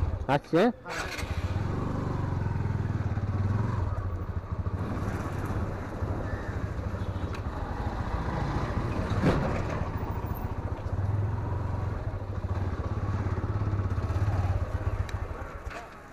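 Motorcycle engine running at low speed with a steady low hum as the bike rides slowly along a lane, easing off just before the end. A single sharp click comes about nine seconds in.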